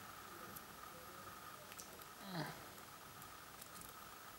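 Quiet handling of small metal contact pins being pressed one by one into a PGA ZIF socket, giving a few faint light ticks. A short falling sound comes about two seconds in.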